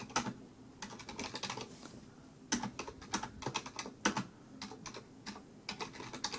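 Typing on a computer keyboard: quick runs of key clicks, with a short pause a little before halfway.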